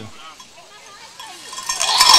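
A bell on a charging goat's neck clanking as it runs, turning into a loud, bright clatter with a ringing tone near the end as the goat reaches a man.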